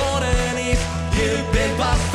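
Live pop-rock band playing, with a steady kick-drum beat of about two and a half strokes a second under bass, keyboards and guitar, and sung vocals.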